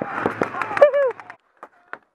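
A man's short yelp of "ah!" over a second of rustling and rapid sharp pops, then the sound drops away abruptly to near silence.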